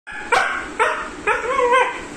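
Siberian Husky vocalising in three short pitched calls, the third longer and rising then falling in pitch.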